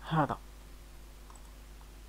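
A man's voice utters one short syllable at the start. Then comes quiet room tone with a steady low hum and a couple of faint clicks.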